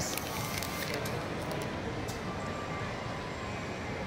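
Steady background hum of a busy indoor shopping mall with faint distant voices, and a few light clicks in the first couple of seconds.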